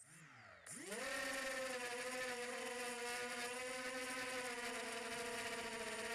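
A 250mm FPV racing quadcopter's motors and propellers spin up with a quick rising whine in the first half second, then hold a steady whine as it lifts off and flies. The sound is picked up by the onboard camera.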